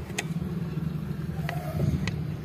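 Steady low background hum with a few short, sharp clicks.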